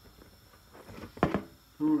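Quiet handling of a utensil on a fish fillet, then one short, loud knock about a second in.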